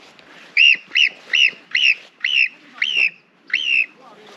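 Marmot alarm calls: a series of seven sharp, high chirps, each rising then falling in pitch, about two a second.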